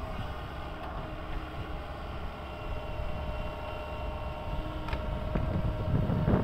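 SANY crawler excavator running steadily in the distance, a low engine rumble with a steady whine over it, and two faint knocks near the end.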